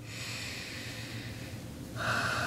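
A long, even breath drawn in through the nose.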